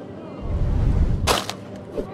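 Low rumble of handling noise on the phone's microphone as the phone is swung, with one sharp crack at its loudest point about a second and a quarter in.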